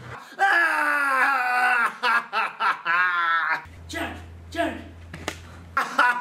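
A person's voice making drawn-out, wavering vocal sounds with no clear words, in several stretches. A low steady hum sits under it during the second half.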